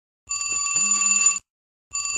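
Flip phone ringing: a bell-like ringtone repeating, each ring about a second long with a short pause between, one full ring and then the start of the next.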